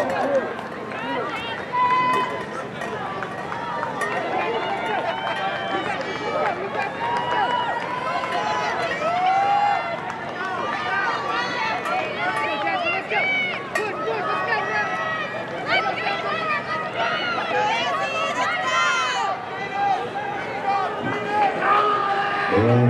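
Spectators along a cross-country course shouting and cheering encouragement to passing runners, many voices overlapping steadily.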